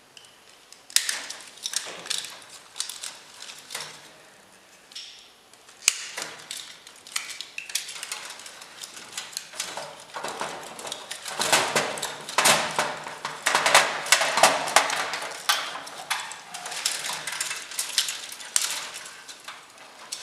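Parts of a dismantled fluorescent light fixture being handled on its sheet-metal housing: the metal lampholder rail and fittings clatter and knock, with irregular clicks and rattles that get busier and louder in the second half.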